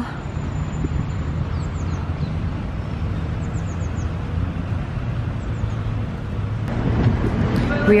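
Outdoor park ambience: a steady low rumble of distant city traffic and wind, with a few faint, high bird chirps in short runs of three or four. Just before the end it gives way to the louder, busier sound of a shop interior.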